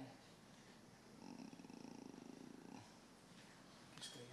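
Near silence: room tone, with a faint low rasping buzz for about a second and a half in the middle.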